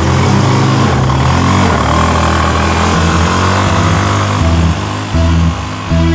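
Small auto-rickshaw (three-wheeler) engine running, mixed with background music.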